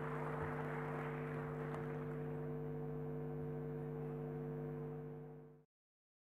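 Steady electrical hum of a few fixed low tones over a soft hiss, fading out about five seconds in and cutting to dead silence.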